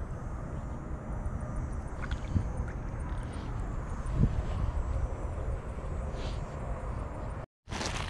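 Wind buffeting the microphone of a body-worn action camera: a steady low rumble with a couple of faint knocks, breaking off into a moment of silence near the end.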